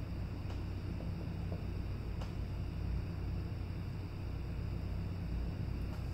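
Steady low electrical hum and hiss of room tone, with a couple of faint light clicks about half a second and two seconds in.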